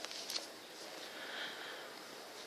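Faint steady outdoor background noise, with a couple of light clicks about a third of a second in.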